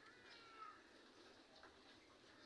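Near silence with one faint animal call early on that glides down in pitch over about half a second.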